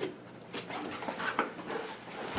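A dog making a few short whines, amid light knocks and scratches as it works at a door.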